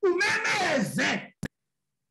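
A preacher's voice drawing out a long, emphatic 'no' with its pitch sliding up and down. It ends about a second and a half in with a short click, and then the sound drops out to dead silence.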